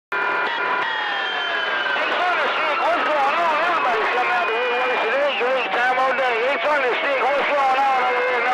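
CB radio receiver on channel 28 picking up skip: unintelligible, distorted voices over the radio, with steady whistles and whistles that slide slowly down in pitch over the first few seconds.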